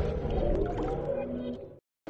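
Tail of a TV channel's electronic intro jingle: sustained synth tones with a few gliding notes, fading out and dropping to silence near the end.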